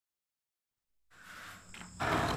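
Silence for about a second, then a steady chorus of crickets fades in.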